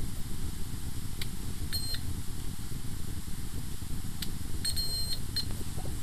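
Short high-pitched electronic beeps from a handheld electrical tester while checking for voltage: one beep about two seconds in and a quick cluster around five seconds, over a steady low rumble.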